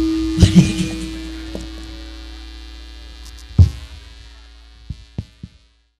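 The last held note of a Sundanese gamelan ensemble ringing away after the piece ends, with a few loose percussion strikes, one strong one past the middle, while the whole sound fades steadily to silence.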